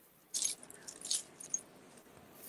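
A few brief clinks and rattles of small hard objects knocking together: crystals, beads and stones shifting in a bag as a hand rummages through them.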